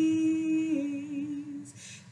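A woman singing unaccompanied, holding one long sung note that steps down slightly about three quarters of a second in and fades away before the two-second mark.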